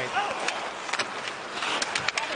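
Ice hockey arena crowd noise, with several sharp clicks of sticks and puck on the ice as players battle in front of the net.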